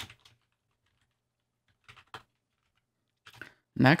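Keys tapped on a computer keyboard in a few brief clusters of clicks, with near-silence between them.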